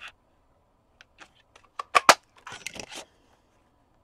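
Handheld plastic border punch snapping down through cardstock: two sharp clicks about two seconds in, the click that tells the punch has cut, followed by a brief rustle of the card.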